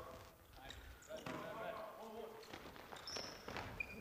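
Faint volleyball drill play on a hardwood gym court: a few sharp ball contacts and two short high squeaks in the second half, with faint players' voices in the hall.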